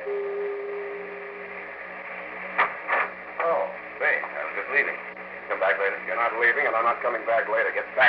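A single held note closes a brass music bridge in the first second or so. From about two and a half seconds in, voices talk, as in an old radio-drama recording, with a steady low hum beneath.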